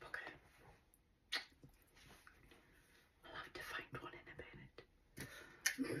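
A woman's quiet, hoarse speech, her voice nearly gone with laryngitis, too weak for the words to come through clearly. There is a single short click about one and a half seconds in.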